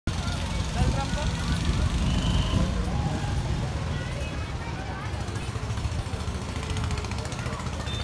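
Indistinct, distant voices over a steady low rumble.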